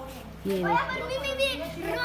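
Speech only: children's voices talking.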